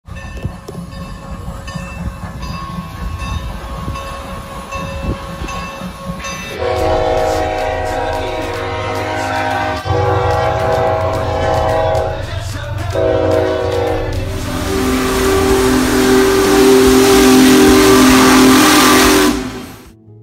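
Freight locomotive air horn sounding the grade-crossing signal, long, long, short, long, each blast a chord of several tones, the last one lower in pitch. The rumble of the passing train builds loudly under the final blast, after a lower rumble of train noise in the first few seconds.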